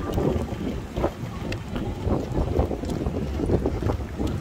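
Wind buffeting the microphone in gusts, with faint, irregular clops of police horses' shod hooves walking on an asphalt path.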